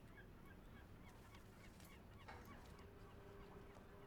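Near silence: faint background ambience with a few soft, short high chirps and, from about halfway through, a faint steady hum.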